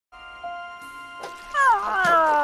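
Cartoon giant snail whistling: a loud, wavering note that glides downward, starting about one and a half seconds in. Soft held background music notes sit under it.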